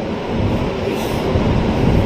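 A steady low mechanical rumble with a broad hiss over it.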